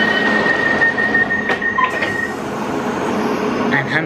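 London Underground Piccadilly line train pulling into a station, heard from inside the carriage: steady running noise with a thin, steady high whine for about the first two seconds.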